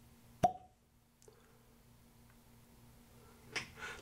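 Cork stopper pulled from the neck of a whisky bottle, giving one sharp pop about half a second in, with a brief ring after it.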